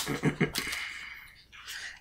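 A short laugh of a few quick pulses, then quiet room tone.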